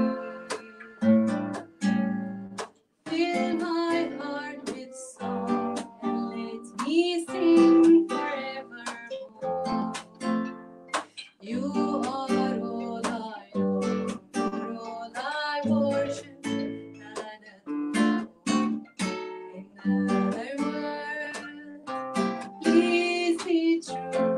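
Live acoustic trio: a woman singing over a plucked acoustic guitar, with a violin bowed alongside.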